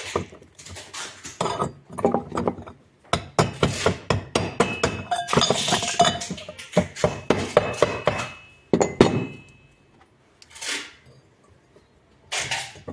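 Metal goat bell clinking and knocking as it is handled and its leather collar strap and buckle are worked. The knocks come in an irregular run, with short ringing bell tones in the middle. It then goes quiet except for one last short knock.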